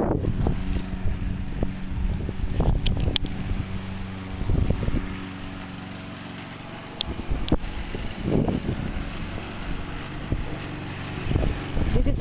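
Push lawn mower running steadily, with gusts of wind buffeting the microphone.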